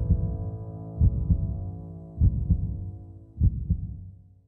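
Heartbeat sound effect: four slow double thumps, about one every 1.2 seconds, over a sustained musical chord. Both fade away toward the end.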